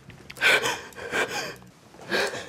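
A person crying, with two sharp gasping sobs about half a second and a second and a quarter in.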